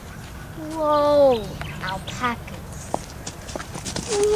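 A person's voice making a drawn-out cry that falls steeply in pitch about a second in, followed by a couple of short, quack-like calls.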